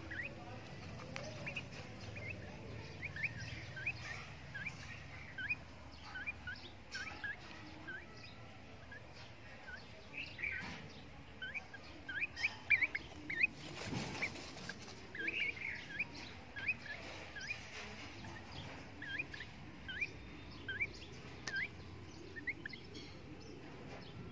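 A francolin giving short rising chirps, about two a second, with a brief scuffing noise a little past the middle.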